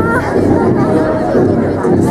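Crowd noise in a large sports hall: many voices chattering and calling out, loud and continuous.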